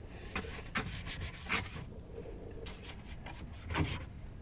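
A paintbrush scrubbed across sketchbook paper, working in paint in about five short scratchy strokes, the loudest near the end.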